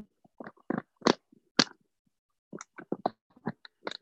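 Close handling noise of a camera trap being worked against a tree trunk: scattered short clicks, knocks and scrapes, a few every second and busier in the second half, with silent gaps between them.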